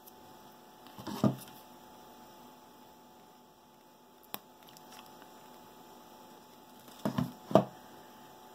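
Handling noise from crafting by hand: brief knocks and rustles about a second in and again near the end as felt pieces and a hot glue gun are picked up and worked, with a single sharp click a little past four seconds. A faint steady hum runs underneath.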